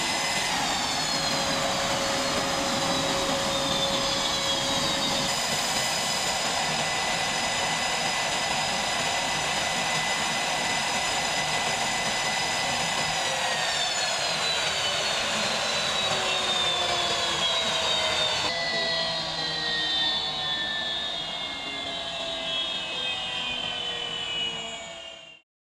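EA-18G Growler's twin F414 turbofan engines running on the ground: a steady jet rush with a high turbine whine. In the second half the whine falls steadily in pitch.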